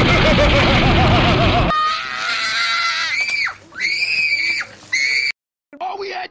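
Loud, heavily distorted noise with a wavering tone, cut off abruptly at under two seconds by a child's high-pitched screaming. The screaming comes in three stretches, the first ending in a falling pitch, and stops short near the end.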